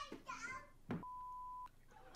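A child's voice from the played clip, then a single steady electronic beep, one pure tone lasting about two-thirds of a second, that starts and stops abruptly. It is typical of a censor bleep laid over a swear word.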